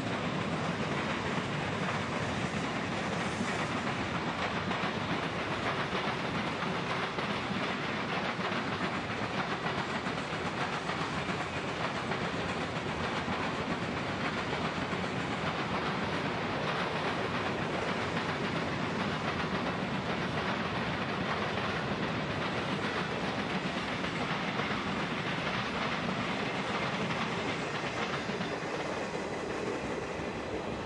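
Freight train cars, covered hoppers and boxcars, rolling past close by, a steady noise of steel wheels on the rails that eases off slightly near the end.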